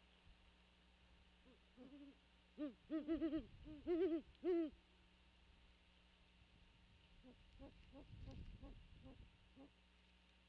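Great horned owl hooting: a run of about eight low hoots in the first half, then a fainter run of hoots near the end.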